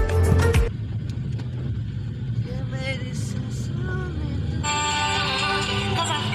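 Music cuts off abruptly under a second in, leaving the steady low rumble of a car driving along a road, heard from inside the cabin; music starts again about five seconds in.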